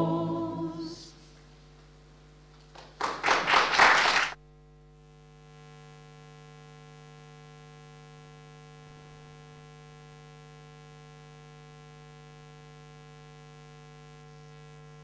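A mixed choir's final sung chord dying away, then about a second and a half of audience applause that cuts off suddenly. After that, a steady quiet hum of several held pitches.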